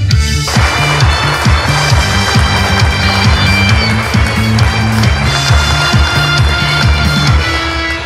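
Instrumental break of a song's backing track played over a stage PA, with a steady bass beat and no singing. A dense, noisy layer comes in about half a second in.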